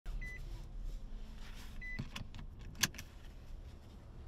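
Two short high electronic beeps from a car's dash chime, then rustling and a string of sharp clicks as the driver settles in and draws the seatbelt across, the loudest click a little under three seconds in.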